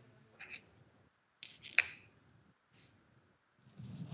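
Faint clicks and rustles amid near quiet, with one sharper click a little under two seconds in.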